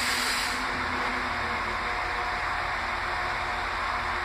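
Stationary Northern class 195 diesel multiple units idling: a steady hum and rush of engine and cooling-fan noise with a faint low pulsing. A high hiss dies away in the first second.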